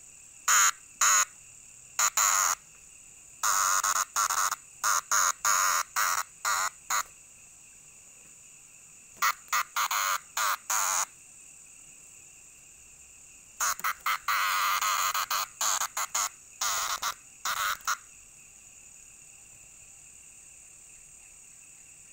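A large green cicada, held in the hand and prodded by fingers, gives loud harsh buzzes in bursts from a fraction of a second to over a second long, in four clusters separated by pauses. Behind it runs a steady high-pitched chorus of insects, which is all that is left near the end.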